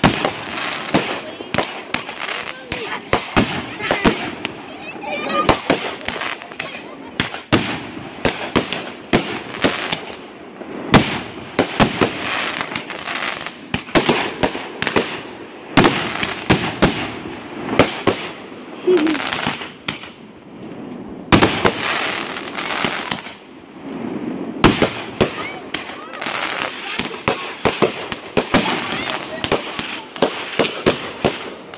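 Consumer fireworks fired from the ground in rapid succession: repeated launch bangs and crackling bursts overhead, with no let-up. Several louder single reports stand out among them.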